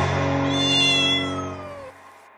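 A single drawn-out pitched call that falls slightly in pitch, heard over the last held notes of background music. The music fades out toward the end.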